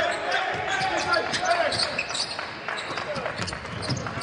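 Basketball dribbled on a hardwood court, a series of bounces over the hum of the arena.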